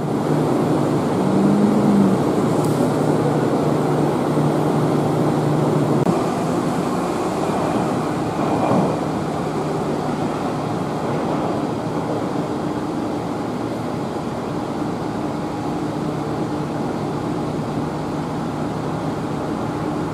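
Steady hum of trams standing at a tram stop with their onboard equipment running, over a background of traffic noise. The low hum eases a little about six seconds in.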